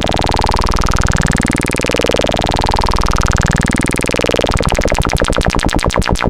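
Modular synthesizer tone whose filter is swept upward in repeating rising ramps, about one every two seconds, by an Erica Synths Black LFO. About four and a half seconds in, the pattern turns much faster as a positive control voltage speeds up the LFO.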